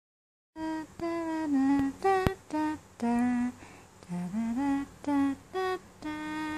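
A person humming a slow tune in short, separate notes, starting about half a second in; a sharp click sounds about two seconds in.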